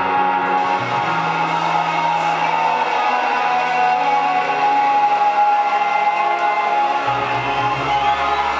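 Live band music: guitar with held sustained tones, and a deep bass line coming in about seven seconds in.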